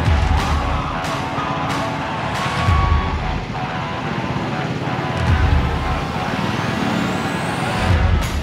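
Motorbike ride heard from the rider's seat: steady engine and road noise with wind on the microphone, low thumps about every two and a half seconds and a rising whine near the end, over background music.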